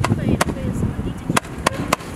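A 56-shot, 14 mm consumer firework cake (Celtic Fireworks 'WAP') firing: about five sharp shots in two seconds, unevenly spaced, over a low rumble.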